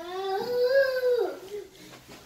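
A toddler's single drawn-out vocal call, rising and then falling in pitch, lasting about a second and a half.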